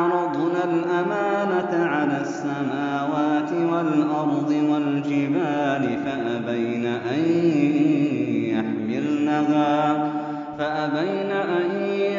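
A male reciter chanting the Quran in Arabic: slow, melodic recitation with long held, ornamented notes and gliding pitch, briefly breaking for a breath near the end.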